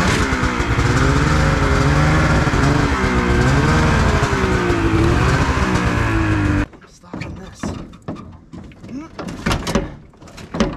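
Ski-Doo snowmobile's two-stroke engine revving under load as the sled is driven up loading ramps, its pitch rising and falling with the throttle. The engine cuts off suddenly about two-thirds of the way through, followed by a few knocks and clunks.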